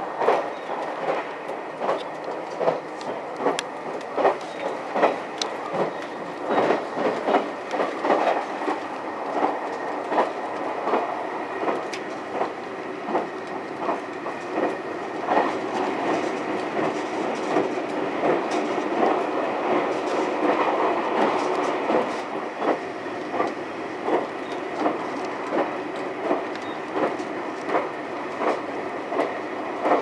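JR West 283 series 'Ocean Arrow' electric express train running at speed, heard from inside the front car: a steady running rumble with a repeated clickety-clack of wheels passing over rail joints.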